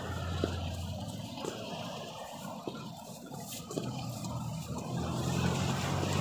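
Road traffic on a city street: a steady low engine hum and tyre noise from passing cars, growing a little louder near the end as a vehicle comes closer.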